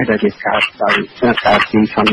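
Speech only: a voice reading a news report in Khmer, with no other sound.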